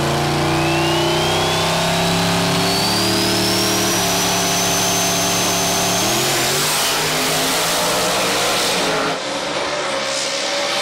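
Two small-tire drag cars, a second-generation Chevrolet Camaro and a Fox-body Mustang, holding their engines at steady high revs on the starting line while a high whine climbs slowly above them. The revs step up about four seconds in and rise as the cars launch about six seconds in.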